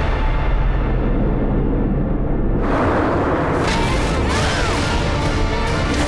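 Dramatic film score with action sound effects: booming impacts, and a sudden loud burst about two and a half seconds in.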